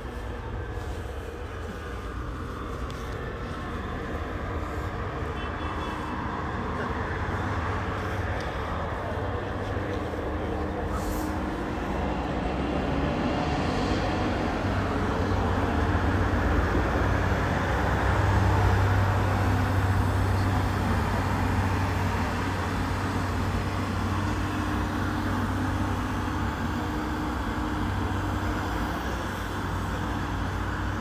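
A steady low engine rumble that swells to its loudest a little past halfway, then eases off slightly.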